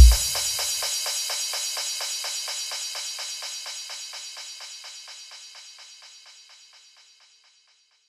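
Rapid electronic snare roll of quick, evenly spaced hits, fading steadily away to nothing by about six and a half seconds in. The tail of a deep electronic kick drum dies out in the first second.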